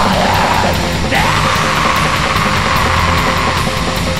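Black metal song: a harsh screamed vocal over distorted guitars and fast drums, with one long held scream starting about a second in.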